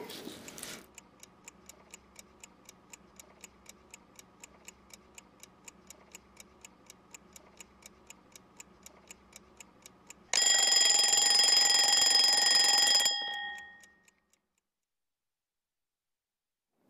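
Alarm clock sound effect: quiet ticking at about four ticks a second, then about ten seconds in a loud bell ringing for some three seconds before it cuts off and dies away.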